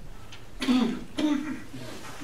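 A person clearing their throat twice in quick succession, close and loud, about half a second in and again just after a second.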